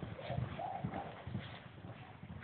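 Horses galloping on soft arena dirt: a fast run of dull hoofbeats as a roping horse chases a running steer.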